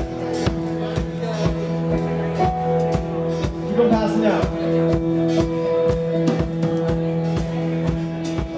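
Live rock band playing a song's instrumental intro: guitars hold sustained chords over a steady drum beat of about two hits a second. A brief voice can be heard about halfway through.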